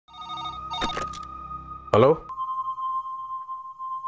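Desk telephone ringing: two short trilling rings in the first second over a steady high tone, then a single steady high tone holds once the call is answered.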